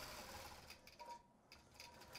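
Faint sound of a long-arm quilting machine stitching, barely above near silence, with a brief near-silent gap about a second in.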